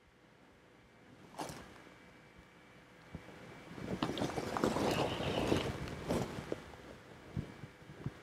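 Faint irregular rustling and crackling, loudest in the middle, with a few soft clicks.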